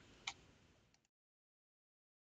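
A single computer mouse click over faint room hiss, then the sound cuts off to dead silence about a second in.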